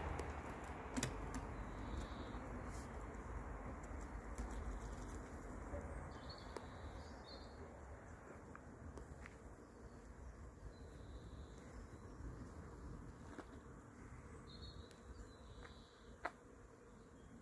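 Honeybee swarm buzzing as a steady hum while the bees are shaken down into a cardboard box, the buzz slowly fading, with a few light knocks.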